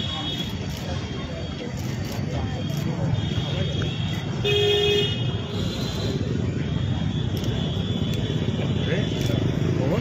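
Low murmur of a standing crowd over the steady hum of road traffic, with a vehicle horn sounding once for about half a second near the middle.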